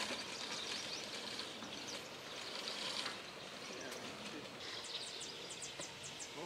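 Outdoor ambience with small birds chirping faintly, and a run of quick high chirps near the end.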